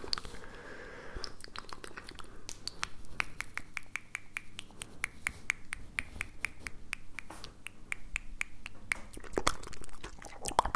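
Wet mouth and tongue clicks and pops made right at a microphone: a rapid, uneven run of sharp clicks, several a second, many of them with the same hollow pitched pop through the middle of the run.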